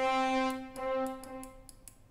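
A sampled brass-unison note from a software sampler sounding twice at the same pitch, the second time a little quieter. Each note is triggered by clicking the on-screen key, which plays it at different velocities, and the second note fades out shortly before the end.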